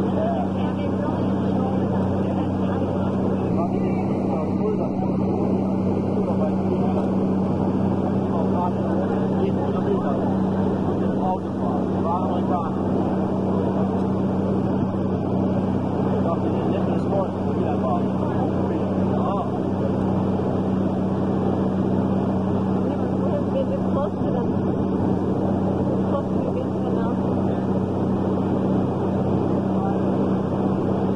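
Engine of a small lake ferry boat running steadily, a constant low drone heard from on board.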